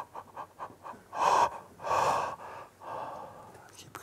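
A man breathing heavily without voice: a few quick short breaths, then two strong exhalations and a longer, softer one. It is a demonstration of pent-up tension being released through the breath.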